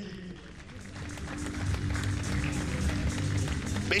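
Music with steady, sustained low notes that slowly get louder.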